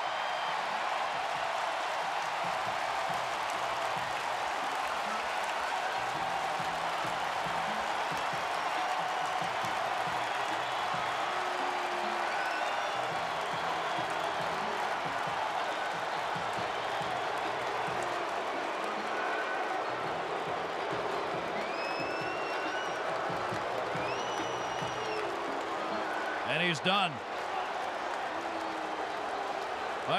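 Large stadium crowd cheering in a steady, continuous wall of noise, with individual shouts and calls rising and falling above it; a short louder voice breaks through about three-quarters of the way in.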